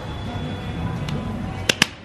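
Low café background with faint music, then two sharp clicks in quick succession near the end.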